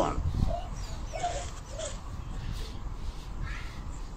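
A few faint short animal calls, three in the first two seconds, over a low steady background rumble.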